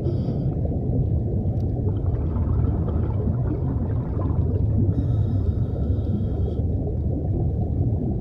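A steady, dense low underwater rumble, with faint wavering tones inside it.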